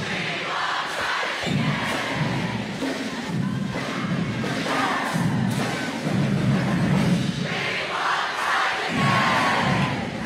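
A crowd of students cheering and yelling, with music and a low, pulsing beat underneath.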